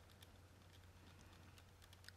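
Near silence: a few faint, scattered ticks of a fine-tip pen touching a small paper tile as tiny gaps are inked in, over a low steady hum.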